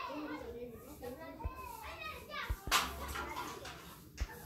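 Children's voices talking and calling in the background, with one short sharp noise about three seconds in.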